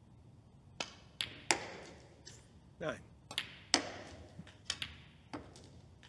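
Snooker balls clicking: the cue tip striking the cue ball and balls knocking into one another and the cushions, a string of sharp clicks. The two loudest ring briefly.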